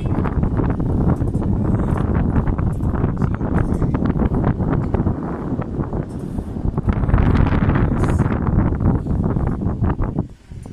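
Wind buffeting the camera's microphone in uneven gusts, strongest and brightest for about a second around seven seconds in.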